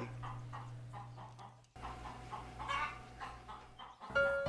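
A chicken clucking quietly, a few short clucks at a time, over a steady low hum. The sound breaks off abruptly a little under two seconds in, and the clucking resumes soon after.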